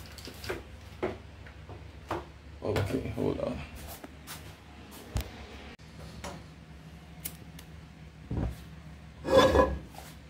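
Kitchen handling sounds: scattered knocks, clicks and rubbing as things are picked up and set down, with a louder clatter about three seconds in and again near the end. A steady low hum runs underneath.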